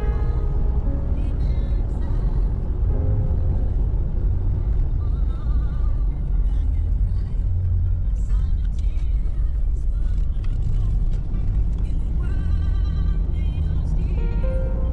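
Steady low road and engine rumble inside a moving car's cabin, with music playing over it.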